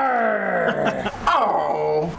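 A man's voice giving two long, drawn-out cries, each sliding down in pitch, the second starting about halfway through.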